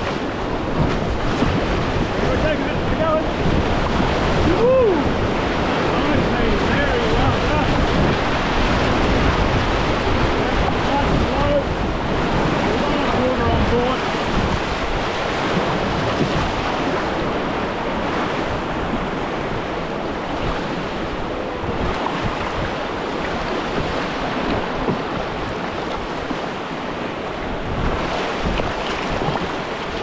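Whitewater rapids rushing and splashing around a canoe, with wind buffeting the microphone.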